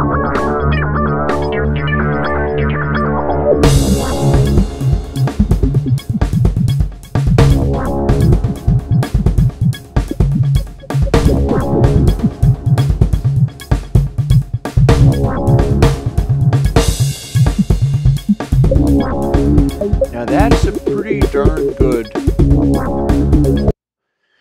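A synthesized music mix played back through the Airwindows Desk analog-console emulation plugin: sustained synth chords, then a drum kit with kick and snare comes in about four seconds in and carries a steady beat under the chords. The playback stops abruptly just before the end.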